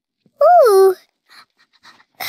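A young girl's wordless playful vocal call, high-pitched, rising and then falling in pitch, about half a second long, followed by faint breathy sounds.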